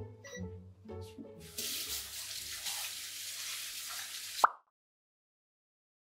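Background music, then a kitchen tap running in a steady hiss for about three seconds, cut off by a single sharp click.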